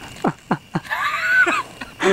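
A man's vocal cries as he acts out being stabbed from behind: three short falling grunts in quick succession, then a longer wavering cry.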